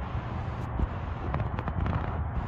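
Low rumble with scattered crackling clicks, thickest in the second half: wind and handling noise on the microphone of a handheld camera.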